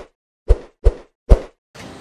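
Cartoon-style bounce sound effect for an animated transition, four short hits with a deep low end: the first comes right at the start, then three more follow less than half a second apart.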